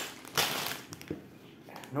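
A short rustle of a clear plastic bag of Lego pieces being handled, about half a second in, followed by a single light click.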